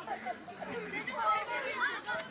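Several people talking at once in indistinct chatter.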